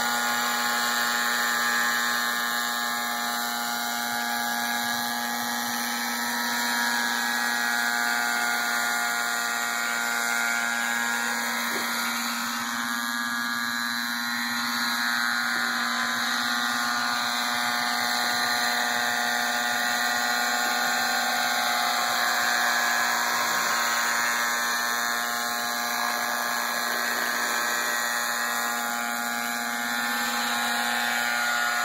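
Nitro RC helicopter in a scale MD 530 body in flight: its small glow engine and rotors run at one steady pitch, swelling and easing slightly in loudness as it moves about.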